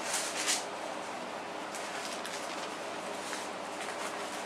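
Steady room noise: an even hiss with a faint, constant hum, and a brief soft rustle at the start.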